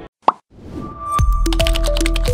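Outro jingle of a TV news channel's end card: after a short gap, a single sharp pop sound effect a moment in, a soft swell, then electronic music with a heavy bass and stepping synth notes that starts just over a second in.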